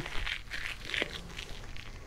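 Faint crinkling and rustling, with one soft click about a second in.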